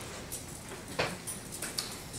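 Faint handling noises on a stage: a sharp knock about a second in and a few small clicks and taps as instruments and gear are picked up and set.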